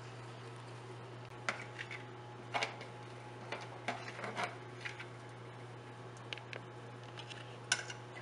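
Faint, scattered clicks and light clinks from a stainless-steel saucepan of milky tea on the stove, over a steady low hum.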